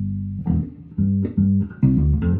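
Electric bass guitar played solo and fingerstyle: a held low note fades out in the first half second, then a string of short, clipped plucked notes follows in a funk rhythm.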